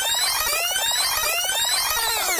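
Fast-forward sound effect: sped-up audio turned into a high-pitched, rapid chirping warble. Its pitch begins sliding back down near the end as it slows to normal speed.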